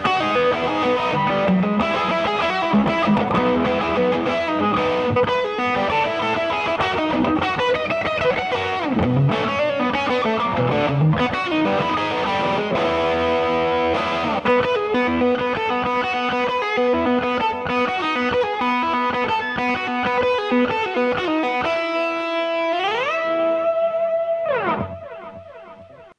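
Parker Fly Mojo electric guitar played through a homebuilt valve amp (a Valve Junior with a Mercury Magnetics kit) into a 25-watt Celestion Greenback speaker: single-note lead lines. Near the end, held notes slide up and down in pitch, then the sound dies away about a second before the end.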